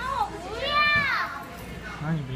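A child's high-pitched voice calling out once, a drawn-out sound of about a second that rises and then falls in pitch.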